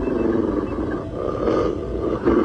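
Cartoon wolf growling, two long growls with a short break between, as it tugs on a rope in its teeth.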